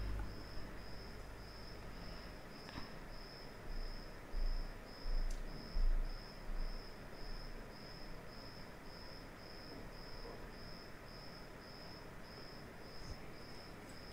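A high-pitched chirp repeating evenly nearly twice a second, over faint room noise, with a few low bumps between about four and seven seconds in.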